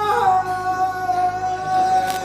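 A man's voice chanting a marsiya, a Shia lament for Muharram, holding one long high note.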